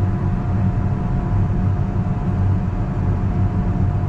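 Farm tractor's engine and drivetrain running steadily under load, heard from inside the cab as a continuous low rumble with a faint steady whine above it.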